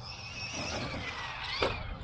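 Losi LST 3XLE monster truck's brushless electric motor whining under throttle, its pitch sinking in the second half. A sharp knock comes about one and a half seconds in.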